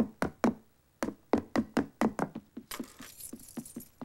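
Rapid cartoon footsteps knocking on stairs, about four a second, with a brief pause about a second in. A short rustling hiss joins them a little past halfway.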